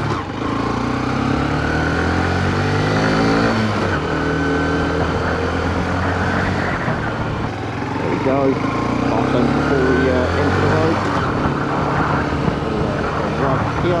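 Honda CB125F's single-cylinder four-stroke engine accelerating away from a stop. Its pitch climbs, drops at a gear change about four seconds in, and climbs again later, with wind rushing over the microphone.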